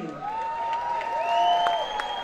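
Audience applauding and cheering, with a few long, drawn-out calls rising and falling above the clapping.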